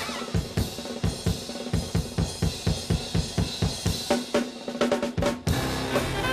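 Jazz drum kit break in a swing big-band number: steady strokes about four a second with snare and cymbals, a busier fill toward the end, and the full band with brass coming back in just before the end.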